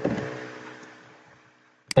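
A short pause in speech: the end of a spoken word trails off into a faint hum that fades to near silence, and talking starts again near the end.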